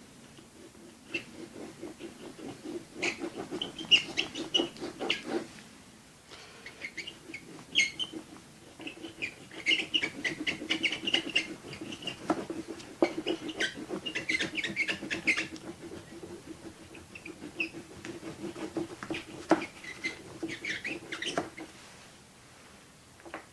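Oil pastel stick scratching across paper in quick, dense back-and-forth strokes, coming in bursts with a short pause about six seconds in and a quieter stretch later on.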